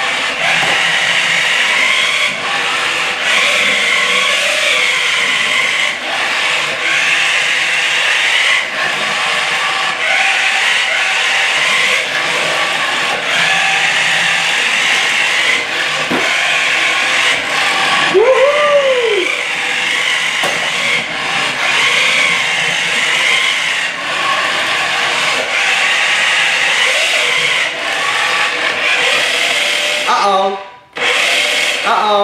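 Battery-powered Maisto Tech McLaren P1 remote-control toy car driving on a hardwood floor: its small electric motor and gears whine steadily, swelling and dipping as it speeds up and slows, with a few light knocks. A brief rising-and-falling squeal comes past the middle.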